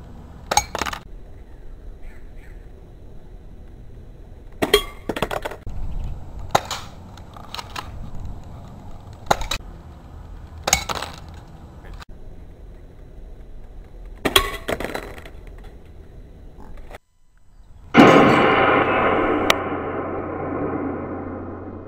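Airsoft Desert Eagle pistol firing BBs at a thick glass cup: about ten sharp cracks and clinks spread out, some with a short glassy ring. Near the end, after a brief dropout, a loud gong-like ringing tone starts and slowly fades.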